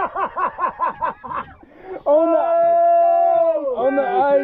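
Laughter in quick rhythmic bursts, about five a second, then a long held whoop of excitement lasting nearly two seconds that drops in pitch at the end, over a big triggerfish just landed.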